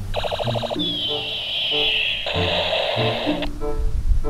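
Electronic sound effects from a battery-powered toy light gun: a rapid stuttering beep for under a second, then a falling laser-like whine, then a burst of hiss that cuts off suddenly. Background music plays underneath.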